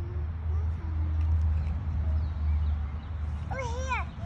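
A steady low rumble in the background, and near the end a short, high, wavering vocal sound from a toddler.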